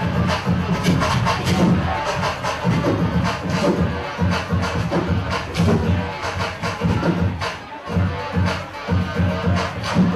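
Turntablist battle routine on vinyl turntables and a mixer: a heavy drum beat chopped up and rearranged by hand, with record scratches cut in.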